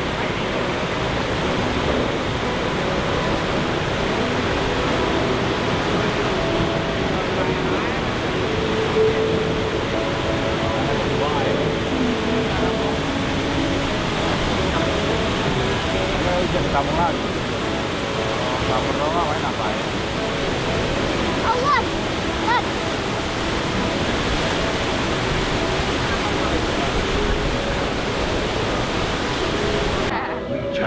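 Steady rushing of water from the waterfalls cascading beneath the trestle and around the passing riverboat, with faint voices of other passengers underneath.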